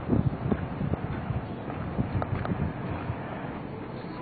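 Wind noise on the microphone while walking outdoors, with a few faint knocks, growing quieter near the end.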